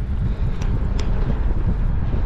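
Wind buffeting the microphone of a handlebar-mounted camera while cycling along a road, a steady low rumble with road noise underneath and two faint ticks about half a second and a second in.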